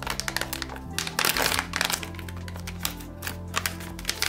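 Many small clicks and crinkles from a plastic phone-case pouch being opened by hand, over background music with held chords that change about a second in.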